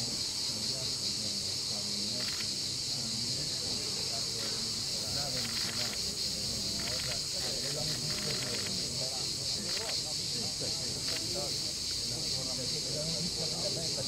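A steady, high-pitched chorus of insects buzzing without a break, with the low chatter of a group of people talking beneath it.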